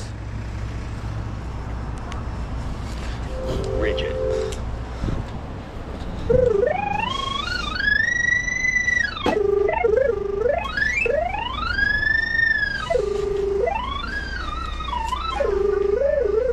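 Handheld pipe locator's signal tone, pitched like a theremin, gliding smoothly up and back down twice as it is swept over the sonde in the drain camera head, settling on a steady low tone between passes. The rising pitch marks a strengthening signal as the locator closes in on the buried pipe's position. A low steady hum runs under the first several seconds.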